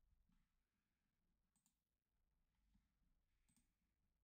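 Near silence: the audio is all but muted between the narrator's remarks.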